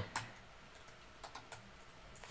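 Faint computer keyboard keystrokes: one click just after the start, then a quick cluster of clicks a little past the middle.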